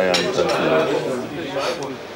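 China cups, saucers and spoons clinking on a café table amid several people talking at once.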